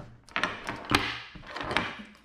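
A few light clicks and knocks, with a short rustle, as a battery charger's lead and its plastic plug are picked up and moved about on a tabletop.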